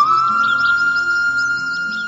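Music: the opening of a devotional song, an instrument holding one long, steady high note over a soft low accompaniment, fading slightly toward the end.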